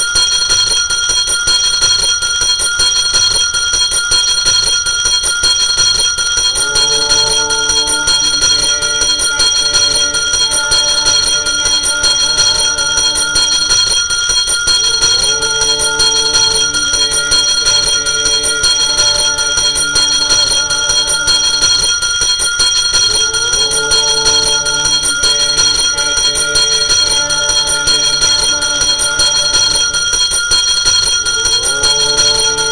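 Temple bell ringing continuously and loudly, a steady bright ring kept up by rapid strikes. From about seven seconds in, a lower melodic phrase repeats beneath it roughly every eight seconds.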